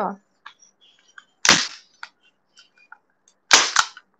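Hand-held manual staple gun fired twice, driving staples into a wooden strip: two sharp snaps about two seconds apart, the second followed by a lighter click.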